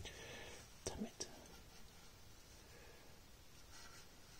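Quiet room tone with a faint whisper at the start and two light taps about a second in.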